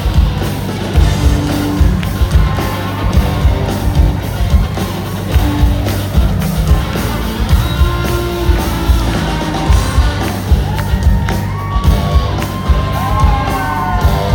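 Live band playing loud, with a steady, heavy drum beat and sustained pitched lines that slide in pitch near the end, ringing in a large hall.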